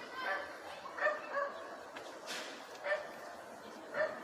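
A dog barking: about four short, high yipping barks spread over the few seconds.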